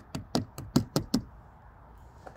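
A quick, uneven run of about six sharp knocks in the first second or so: knuckles rapping on the VW camper's panels, seemingly testing whether the tilting top is fibreglass or metal.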